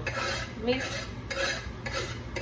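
Knife blade scraping chopped cilantro across a wooden cutting board and into a pot, in a few rasping strokes.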